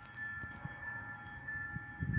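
Faint soundtrack of a motion-graphics template playing back in the KineMaster phone video editor, over a steady thin whine of several high tones.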